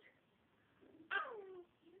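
A toddler's short, high-pitched vocal squeal that falls in pitch, about a second in, after a near-quiet moment.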